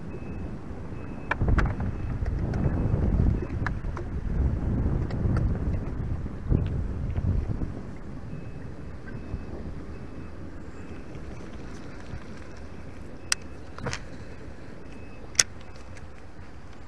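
Wind buffeting the microphone in gusts through the first half, then a steadier, quieter rush. A few sharp clicks from the baitcasting reel and rod being handled are heard, two near the start and three close together near the end.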